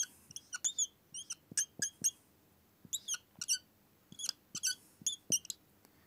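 Dry-erase marker squeaking on a whiteboard as short lines are drawn: a run of brief, high squeaks with light taps, pausing briefly about two seconds in and again near the end.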